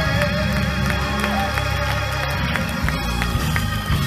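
Live gospel band music with sustained chords and a steady beat, the singer's long held note trailing off near the start.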